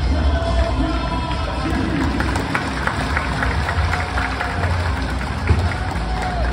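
Music over a football stadium's public-address system, mixed with crowd noise from the stands. A short run of hand-claps comes about two to three seconds in.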